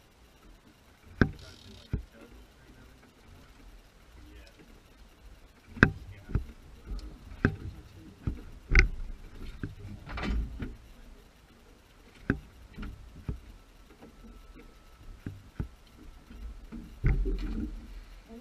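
Irregular sharp knocks and bumps on a small open fishing boat, several seconds apart, over a low steady background, with a louder rumbling burst near the end.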